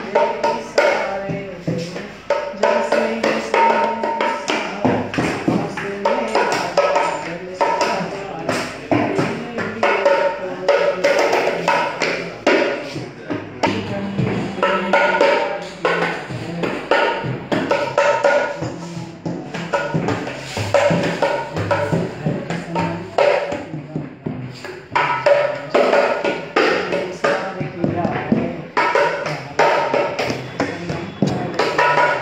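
A man singing while playing a naal, a two-headed barrel hand drum, with a constant run of hand strokes on the drumheads.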